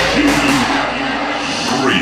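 Hardstyle track playing over a club sound system in a breakdown with the kick drum out, a voice over the music, and a rising sweep near the end.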